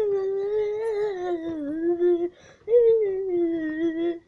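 A young man's voice singing two long held notes, the pitch wavering a little, with a short break between them a little over halfway through.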